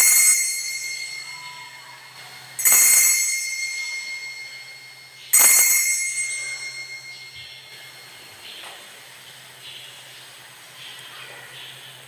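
Altar bell rung three times, each ring about two and a half seconds apart and fading out before the next: the signal at the elevation of the chalice after the consecration at Mass.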